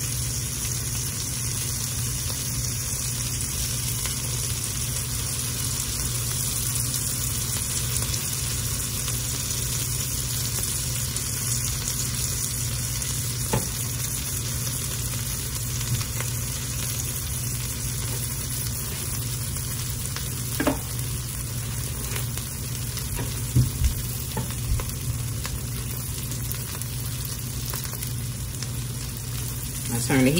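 Butter and chicken sandwiches sizzling steadily in a frying pan while a spatula presses them down, with a few faint taps in the latter half.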